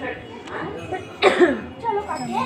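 A person coughs, two sharp bursts a little over a second in, over the chatter of people talking.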